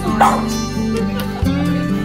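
A small white spitz-type dog gives one short, sharp bark, a yip, about a quarter second in, over steady background music.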